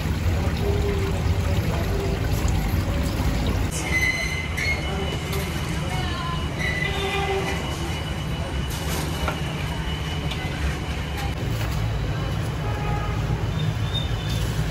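A steady low rumble runs throughout, with faint voices in the background and a ringing metal clank about four seconds in.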